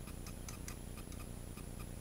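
Clockwork mechanism of a small vintage wind-up toy ticking steadily, about four light ticks a second, while the toy fails to work.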